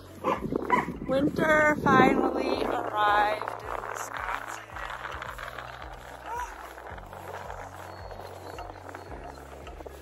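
Background music, with several short, loud pitched calls over it in the first three and a half seconds; after that the music goes on more quietly with a soft steady hiss.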